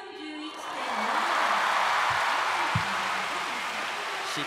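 Large arena crowd bursting into cheers and applause about half a second in and staying loud, the reaction to a title-winning score being shown.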